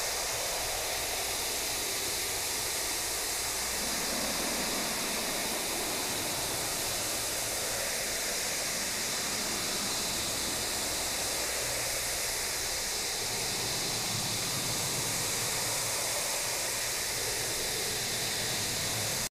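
Steady hiss of water spraying onto a car in an automatic car wash, heard from inside the car's cabin.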